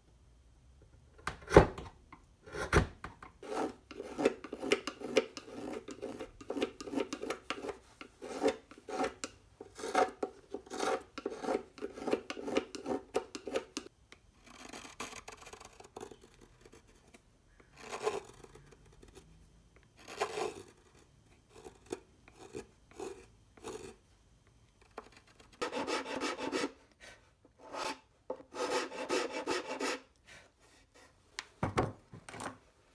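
Hand tools shaving and scraping the wood of a violin neck: quick runs of short knife strokes with pauses between them. Two sharp knocks come about one and a half and three seconds in.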